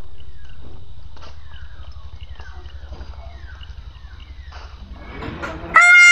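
Outdoor ambience: a low steady rumble under a bird giving short falling chirps about twice a second, fading slowly. Near the end a loud comic brass-like sound effect cuts in, timed to a wide yawn.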